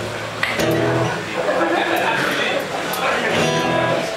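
Acoustic guitar being strummed and picked through the club PA, with voices talking over it.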